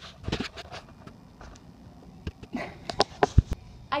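Scattered knocks and clicks with faint rustling, the loudest a quick run of sharp knocks about three seconds in.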